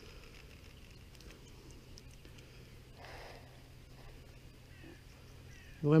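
Quiet outdoor ambience by the water with a few faint, short bird chirps near the end and a brief soft noise about three seconds in.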